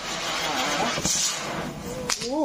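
Ground firework hissing steadily as it sprays sparks, with one sharp crack about a second in.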